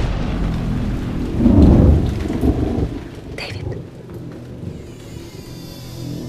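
A deep rolling rumble over a steady hiss, like thunder in rain, swelling about a second and a half in and then dying away, with a brief swish a little after the middle.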